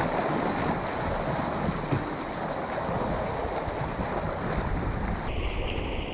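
Churning whitewater rushing around a sea kayak, with wind buffeting the deck-mounted camera's microphone. A steady roar whose top hiss drops away suddenly about five seconds in.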